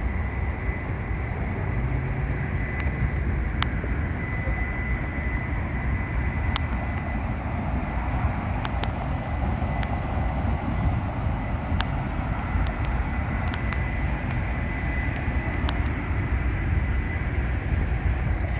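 Steady low outdoor rumble, with a thin steady high whine over it, scattered faint ticks, and a couple of brief high chirps about six and eleven seconds in.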